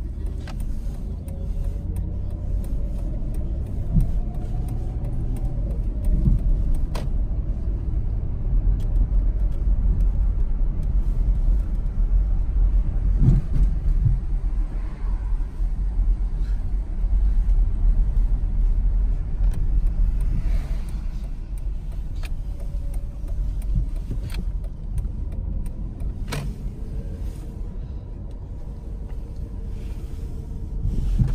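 Car engine and road noise heard from inside the cabin of a moving car: a steady low rumble that swells and eases with the driving. A couple of sharp clicks come through, about a quarter of the way in and again near the end.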